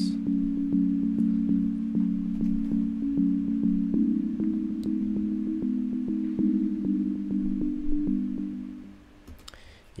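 Soft sine-bell synthesizer playing a simple chord melody in repeated, evenly spaced notes about three a second, moving to a new chord about four seconds in and fading out near the end.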